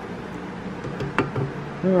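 Two light, sharp knocks about a second apart-in, from a spatula and a stand mixer being handled at a stainless steel mixing bowl, over steady low background noise.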